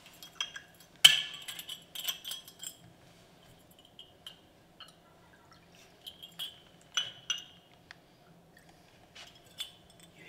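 Glass wine bottle clinking against a drinking glass as wine is poured, a series of sharp ringing clinks, the loudest about a second in, with more through the rest.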